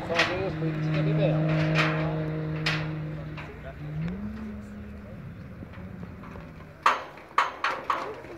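Distant hill-climb race car engine: a steady drone that rises in pitch about four seconds in, holds, then fades. Several sharp pops follow near the end.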